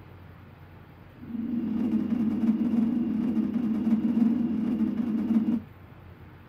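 Low rumbling hum from the TV's speakers, part of the DVD menu's sound. It starts about a second in, holds steady for about four seconds and cuts off abruptly.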